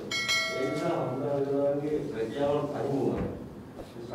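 A bright bell ding near the start that rings on for about a second, the chime of a subscribe-button animation, with a man speaking underneath.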